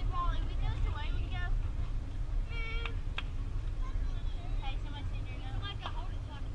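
Distant voices of players and spectators calling out across a softball field, with one drawn-out higher-pitched shout about two and a half seconds in and two sharp clicks just after it, over a steady low rumble on the microphone.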